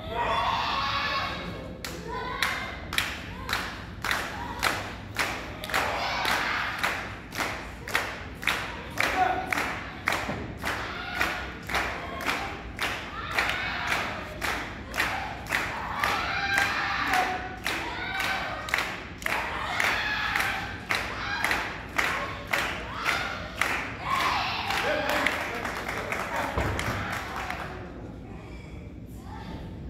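Audience clapping together in a steady beat, about one and a half claps a second, with voices shouting over it.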